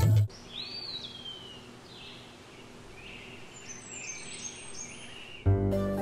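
The sung theme song cuts off, then birds chirp now and then over a steady outdoor ambience hiss. Soft background music comes in about five and a half seconds in.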